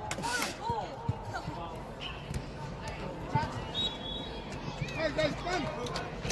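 Indoor soccer play heard from the sideline: players' and spectators' voices calling across the turf, with a few sharp thuds of the ball being kicked and a laugh close by at the start. The large dome gives the sound a roomy echo.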